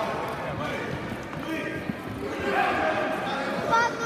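Voices calling out in a large sports hall, with a few dull thuds.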